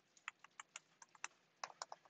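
Faint typing on a computer keyboard: a dozen or so quick, uneven keystrokes.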